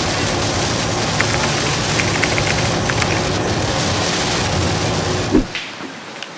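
Rain beating on a moving van's windshield and roof, heard inside the cabin over the steady rumble of tyres and engine on the highway. A few faint ticks of drops come through. The sound cuts off with a brief thump shortly before the end.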